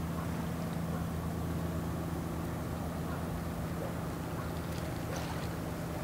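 Low, steady drone of a passing bulk carrier's engine, a continuous hum that weakens near the end.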